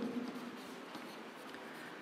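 Marker pen writing on a whiteboard, faint in a small room.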